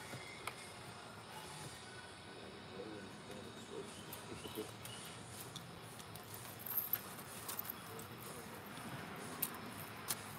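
Faint steady outdoor background with a few sharp clicks, clustered about seven seconds in and once more near the end, as hands work on a sport quad's parts.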